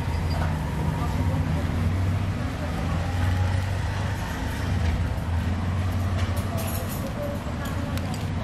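Steady low rumble of road traffic and engines, with voices in the background.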